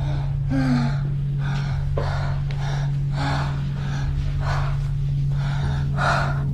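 A person gasping and panting hard, quick heavy breaths about one and a half a second, over a steady low hum.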